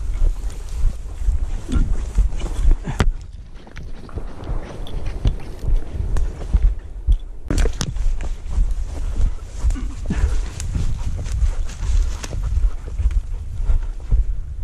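Footsteps and brushing through dry grass, twigs and fallen leaves while walking, in irregular crunches and rustles, over a steady low rumble of wind and handling on the microphone. One sharper snap comes a little past halfway.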